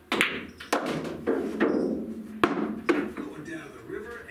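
Pool shot on a pocket-billiards table: the cue tip hits the cue ball, then about five sharp clacks follow over the next three seconds as the balls strike each other and the cushions and an object ball drops into a pocket. A low rolling rumble runs under the clacks as balls roll.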